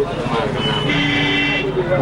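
A vehicle horn sounds once, a steady tone held for about a second, over street noise and background voices.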